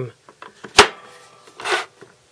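A ceramic stone from a Spyderco Sharpmaker knocks once, sharply, against the sharpener as it is handled and turned, with a brief ring after. A short scraping rub follows near the end.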